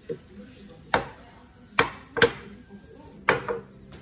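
Enamel roasting dish of oven-roasted potatoes clattering on a stone countertop: five sharp knocks, each with a brief ring.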